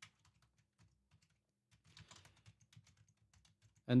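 Computer keyboard typing: faint, quick keystrokes in short bursts, one burst at the start and a busier run about two seconds in.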